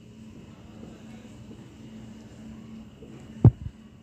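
Marker writing on a whiteboard, faint under a steady low electrical hum, then a single dull thump about three and a half seconds in.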